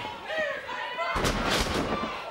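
A wrestler slamming back-first onto the ring canvas from a vertical suplex: one heavy boom about a second in, with a short rumble of the ring after it.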